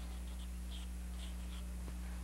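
A run of short, scratchy sketching strokes on canvas, several a second, as a tree and its branches are drawn in, over a steady electrical hum.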